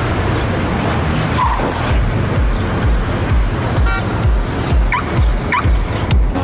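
Car engine and road-noise sound effects over music: a dense rush of noise, then a steady thumping beat about two and a half times a second, with a short toot about four seconds in and two brief rising chirps near the end.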